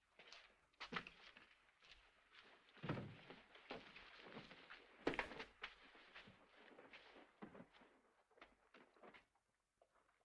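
Near silence in a small room: faint footsteps, rustles and small knocks of people moving about, with a slightly louder thud about three seconds in and another about five seconds in.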